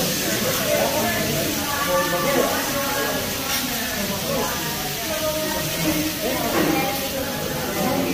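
Vegetables sizzling on a teppanyaki flat-top griddle, a steady hiss, as the chef works them; indistinct voices of people talking run over it.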